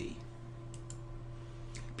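A pause in speech filled by a steady low electrical hum, with two faint clicks: one a little before the middle and one near the end.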